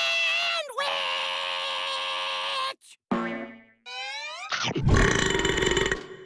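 Cartoon eating sound effects: long held wavering tones, then a falling and a rising glide, ending in a long loud burp.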